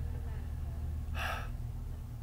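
A man's short, sharp in-breath about a second in, over a steady low hum.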